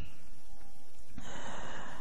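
A man drawing a breath close to a handheld microphone, starting about halfway through, over a steady low hiss.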